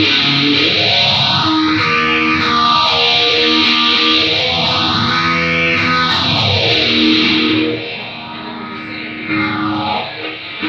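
Distorted electric guitar played through a sweeping modulation effect, the sweep rising and falling about every three and a half seconds. It gets quieter about eight seconds in.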